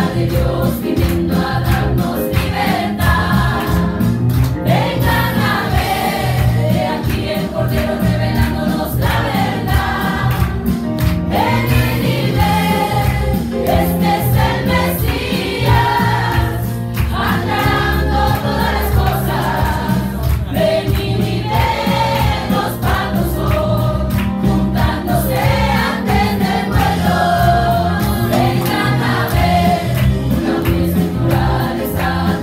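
A small group of women and a man singing a Christian worship song together into microphones, amplified, over a low accompaniment with a steady beat.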